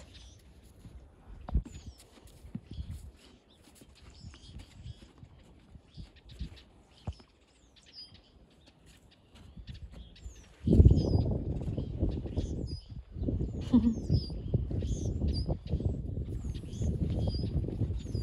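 Small birds chirping on and off in the background, with a few soft thuds in the first half. From about ten seconds in, a loud low rumbling noise rises and covers everything else.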